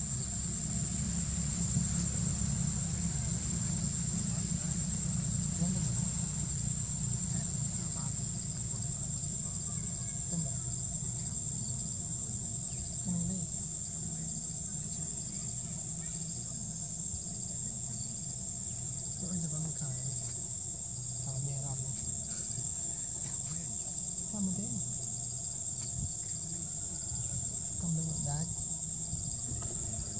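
Insects in the forest keep up a steady, high-pitched drone. Underneath is a low, shifting background with a few short low sounds, which may be faint distant voices.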